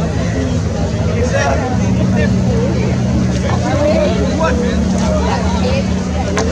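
Motorboat engine running steadily with a low drone, with indistinct voices over it.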